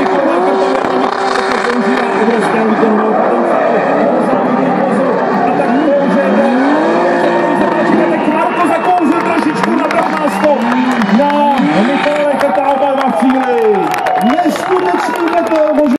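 Two drift cars' engines revving hard during a tandem drift, their pitch climbing and dropping over and over with the two engines overlapping.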